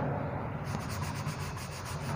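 Chalk scratching on a chalkboard as a hand writes, a run of quick short strokes from about a third of the way in.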